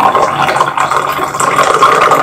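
Coffee poured in a steady stream from a stainless steel pot into a ceramic mug.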